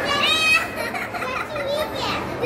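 A young child's high-pitched voice, rising in a short wordless excited call in the first half second, with more voices following in the background.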